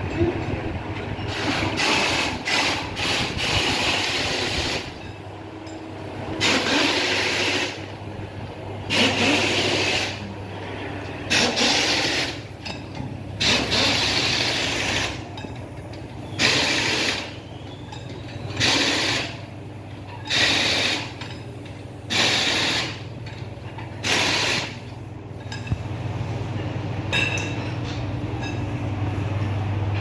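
Pneumatic impact wrench running in about a dozen short bursts, each under a second and a second or two apart, as nuts are run down on wheel spacers at the hubs. A steady low hum runs underneath.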